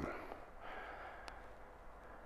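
A man's faint breath out during a pause in speech, over a low steady room hum, with one small click a little over a second in.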